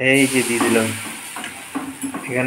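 Patishapta batter sizzling as it is poured from a ladle into a hot iron kadai, starting suddenly at the first splash.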